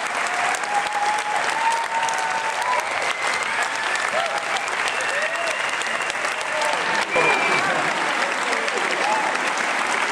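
A large audience applauding steadily, with scattered cheering voices over the clapping.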